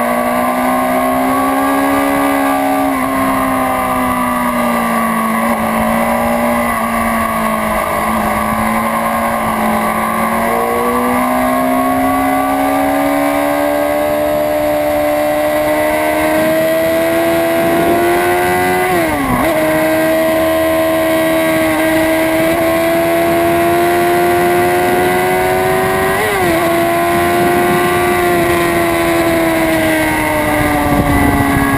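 Honda CBR600RR inline-four engine running at high revs under way, heard from a camera on the bike. The pitch drifts slowly up and down through the bends, with two quick sharp dips in pitch, about two-thirds of the way through and again near the end.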